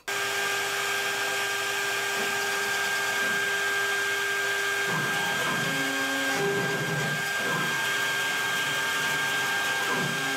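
CNC router spindle running with a 90-degree V-bit, the head traversing over a plywood sheet: a steady machine whine at an even level. From about halfway through, a lower tone comes and goes as the head moves.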